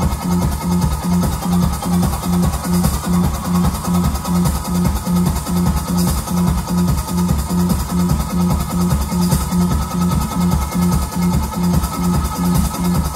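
Live instrumental band playing a repetitive, techno-like groove: electric bass pulsing one low note about two to three times a second over a steady drum-kit beat with constant hi-hats.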